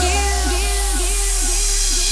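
Happy hardcore track in a drumless breakdown. A synth line dips in pitch on each note, about two a second, over a held deep bass note.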